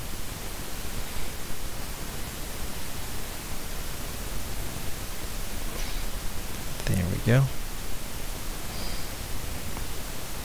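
Steady hiss of recording noise, with a brief wordless vocal sound about seven seconds in.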